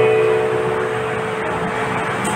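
Instrumental karaoke backing track with no singing: a held chord slowly fading away.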